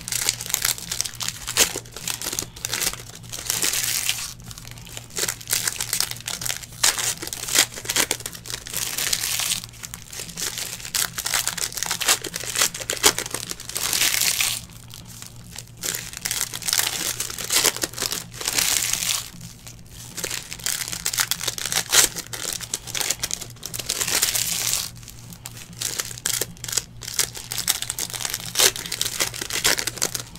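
Foil trading-card pack wrappers being torn open and crumpled by hand, crinkling in irregular bursts that come and go every second or two.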